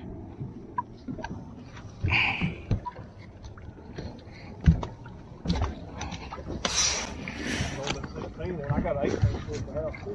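Knocks and bumps of handling on a fishing boat's deck and live-well hatch, with a sharp knock about halfway through and a short hissing rush a little after.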